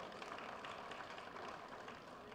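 Faint, even background noise of the hall, picked up through the microphone during a pause in the amplified speech.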